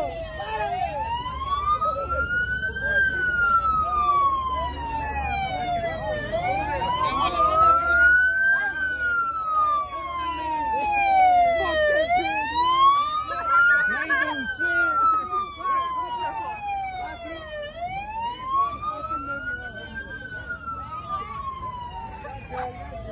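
Emergency vehicle siren on a slow wail, rising over about three seconds and falling over about three, repeating about four times.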